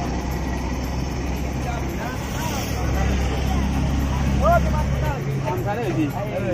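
A motor running with a steady low hum that cuts off suddenly about five seconds in.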